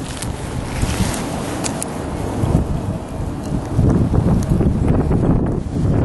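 Wind buffeting the camera microphone, an uneven low rumble that swells and eases, with a few sharp clicks in the first two seconds.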